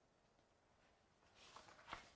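Near silence, then near the end a few faint rustles and a soft tap as a book is closed.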